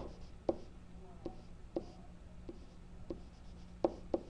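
Pen stylus writing on a tablet screen: a series of light taps, roughly one every half second, with faint scratching between them, over a faint steady low hum.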